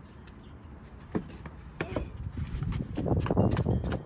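Footsteps crunching in snow. A few separate crunches come first, then a louder, denser stretch of crunching near the end.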